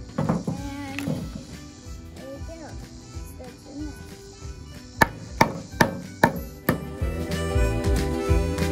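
Claw hammer tapping decorative studs into a wooden birdhouse roof: five quick strikes about 0.4 s apart, starting about five seconds in. Background music plays throughout.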